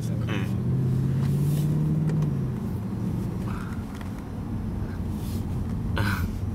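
Mercedes-Benz C63 AMG's V8 heard from inside the cabin, pulling with a slightly rising note for about two seconds, then easing back to a lower, steady drone.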